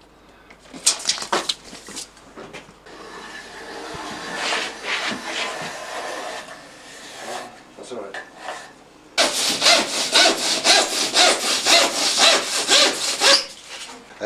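Hand saw cutting through insulated plasterboard in quick, even strokes, about four or five a second, for roughly four seconds starting about nine seconds in. Before that, softer scraping and rubbing on the board.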